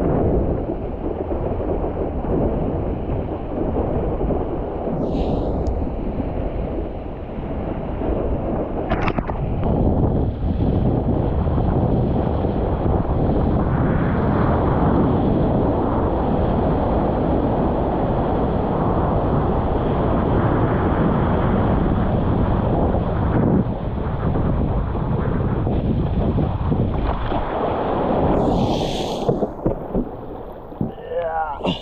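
Wind buffeting a helmet-mounted action camera's microphone, a loud steady low rumble, mixed with rushing water as a longboard rides a small breaking wave.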